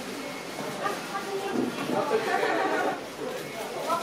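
Indistinct chatter of several voices talking over one another in a room, with no single clear speaker.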